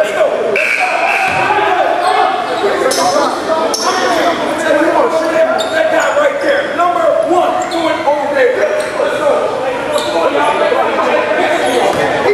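Overlapping chatter of players and spectators echoing in a gymnasium, with a basketball bouncing on the hardwood floor now and then.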